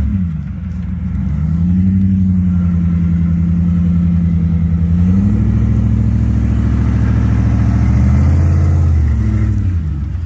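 Ford F-150 pickup's engine working as the truck crawls over rough off-road ground: the revs dip briefly at the start, rise and hold, climb higher about halfway, and fall away near the end.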